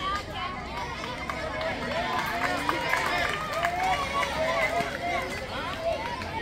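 Many voices shouting and calling over each other at a kho kho game, players and onlookers, with a few short sharp taps among them.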